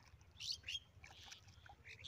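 Birds chirping: two short, high chirps about half a second in, then a softer wavering call, over a faint low rumble.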